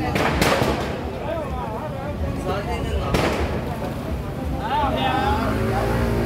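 Two sharp firecracker bangs about three seconds apart, over a steady hubbub of crowd voices.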